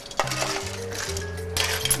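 Clams and a metal utensil clinking against metal pans as cooked clams are scooped from one pan into another, in a few sharp clicks over steady background music.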